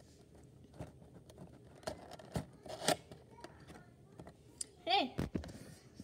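Paperboard model-train box being opened by hand: scattered clicks, scrapes and crinkles as the end flap is pried loose. A brief voice sound comes about five seconds in.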